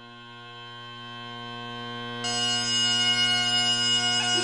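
Great Highland bagpipe playing a pibroch: the steady drone sound swells in and holds, then about two seconds in the sound turns suddenly louder and brighter as the pipe comes fully in.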